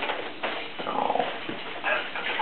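Baby's short high-pitched vocal sound, a brief falling whimper-like squeal about a second in, with a few light knocks from the bouncer's plastic toys.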